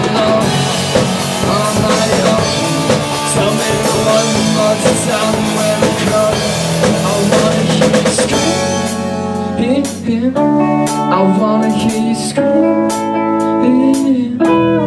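Live rock band playing at full volume: electric guitars, bass and drum kit together. About eight seconds in the sound thins out to separate guitar notes punctuated by sharp drum hits.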